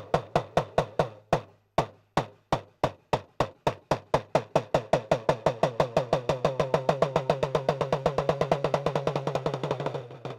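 Idakka, the Kerala hourglass drum, struck with a stick. Single strokes with short pauses speed up into a fast, even roll, and each stroke carries a short ringing tone.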